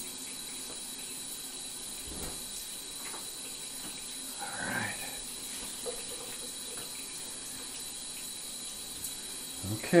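Shower water running steadily, a constant even hiss. About halfway through there is a brief soft murmur of a voice.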